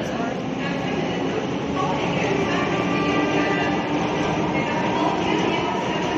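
A steady, loud rumbling noise with a woman's voice faintly under it.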